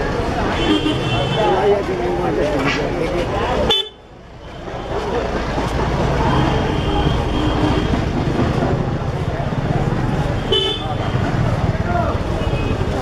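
Busy street-market din of many voices and traffic, with vehicle horns honking several times, including one longer blast a little past the middle. The sound drops away sharply for a moment about four seconds in, then builds back up.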